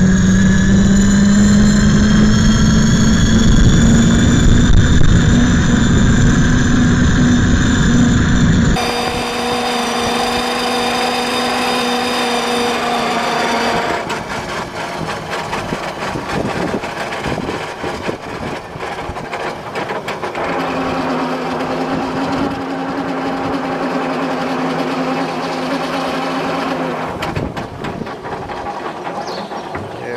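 Electric-converted David Brown 880 tractor driving along, its electric motor and gear train giving a steady whine over a rough noise, rising slightly in pitch over the first several seconds. The sound drops suddenly about a third of the way in, the whine goes on quieter, fades out near the middle and comes back for several seconds later on.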